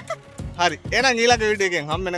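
A man talking and a woman laughing, over background music.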